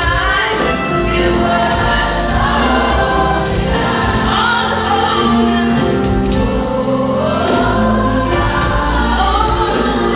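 Youth gospel choir singing, with a soloist's voice on a handheld microphone over the choir.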